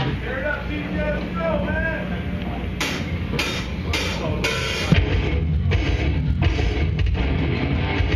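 A death metal band starting a song live: over a held low note and some shouting, four evenly spaced cymbal hits count in, and about five seconds in the full band comes in with distorted guitars, bass and drums.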